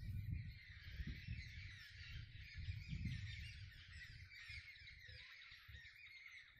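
Many small birds chirping and twittering at once in a dense, faint chorus, over a low, uneven rumble on the microphone.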